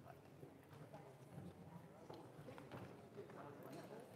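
Near silence in a large hall: faint scattered footsteps and small knocks on a wooden stage over a low murmur of audience voices.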